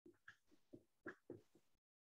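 Near silence with a few faint, short strokes of a dry-erase marker writing on a whiteboard.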